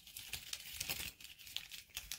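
Clear plastic packaging crinkling and crackling in the hands as a makeup-brush clip package is handled, in a rapid run of small crackles.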